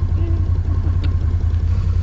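Quad bike (ATV) engine idling: a steady, loud low rumble close to the microphone.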